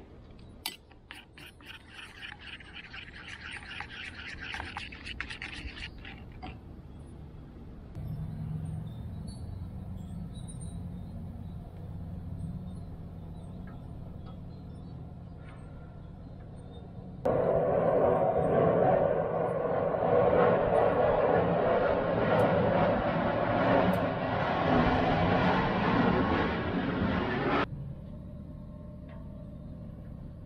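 A metal spoon stirring glaze in a small metal cup, with quick clinks and scrapes for the first six seconds or so. Later a louder stretch of background music starts and stops abruptly, lasting about ten seconds.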